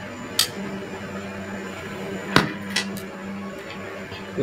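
Transformer soldering gun humming faintly while its trigger is held to solder a wire onto a circuit board's plus pad; the hum stops a little before the end. A few light clicks and taps from the tool and board, the loudest about halfway through.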